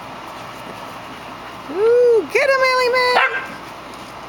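A small terrier howling twice: a short call that rises and falls about two seconds in, then a longer held howl that wavers at its start and stops sharply after about a second.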